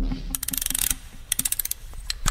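Ratcheting clicks of a clockwork mechanism being wound, in two quick runs of rapid ticks with a short pause between.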